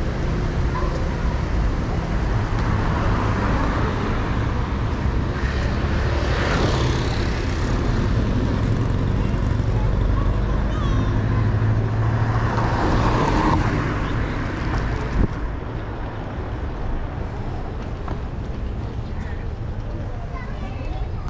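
Street traffic noise: a steady low hum of car engines, with two vehicles passing close, the first about six seconds in and the second about thirteen seconds in.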